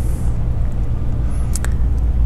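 Steady low rumble and hum of room background noise, with two short clicks about a second and a half in.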